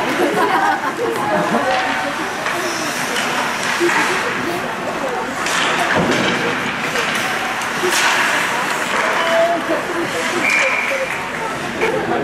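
Indistinct chatter of spectators in an ice rink, with occasional short sharp clacks from hockey sticks and puck during play.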